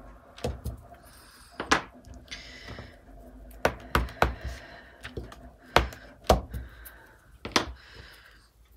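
Wooden-mounted rubber stamps knocking as they are tapped on an ink pad and pressed onto kraft paper on a table: about eight short, sharp wooden knocks, a second or two apart, with a quick run of three near the middle.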